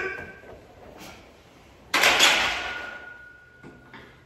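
Loaded barbell set down onto the steel J-hooks of a power rack about two seconds in: a sharp metal clank that fades over about a second, leaving a thin, steady metallic ring.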